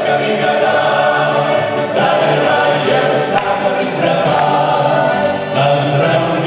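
Male vocal ensemble singing a Slovenian folk song together in multi-part harmony into microphones, with voices sustained throughout.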